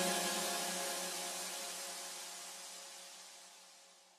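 A deep house track fading out: its last sustained notes and their reverb die away steadily, reaching silence just before the end.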